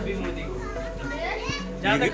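Background chatter of voices, children's among them, over steady background music.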